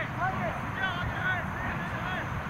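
Several distant voices calling and shouting over one another across a soccer field, short overlapping calls with no clear words, over a low steady rumble.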